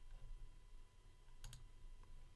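Computer mouse button clicking: a quick cluster of faint clicks about one and a half seconds in, otherwise near silence with a faint low hum.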